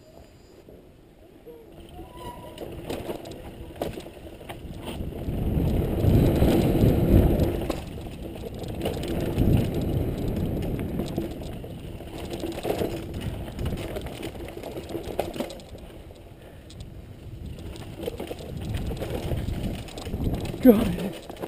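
Mountain bike riding down a dirt singletrack, heard from a camera on the rider: tyre rumble over dirt and roots with scattered rattles and knocks from the bike. It builds up over the first few seconds and is loudest around six to seven seconds in.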